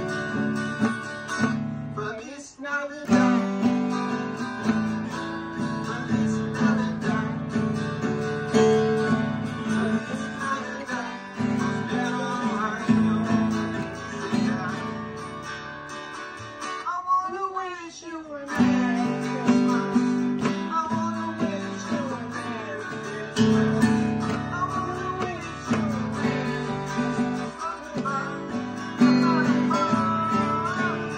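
Acoustic guitar being strummed, chords ringing in a steady rhythm. The playing breaks off briefly twice: a few seconds in, and again around the middle, when a wavering pitched sound comes through.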